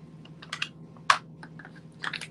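A few sharp clicks and taps over a low steady hum. The loudest click comes just after a second in.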